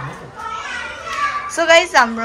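Children's voices talking and playing, with a louder, high-pitched child's call near the end.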